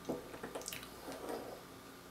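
Faint light clicks of small pen magnets being pulled apart and handled, a few ticks in the first second over a quiet room.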